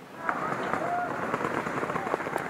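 Many paintball markers firing rapidly at once, a dense continuous crackle of shots in a heavy exchange of fire.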